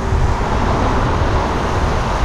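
Wind rushing over the microphone and road noise while riding a bicycle at around 37 km/h: a steady, deep rumble with a hiss over it.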